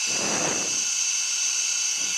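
Steady hiss of an open Formula 1 team-radio channel, with a few thin, steady high tones in it and no voice yet.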